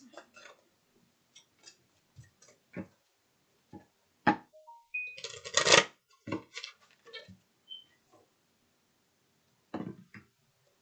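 A deck of tarot cards being shuffled by hand: scattered soft taps and slides of cards, with a denser run of shuffling about five to six seconds in.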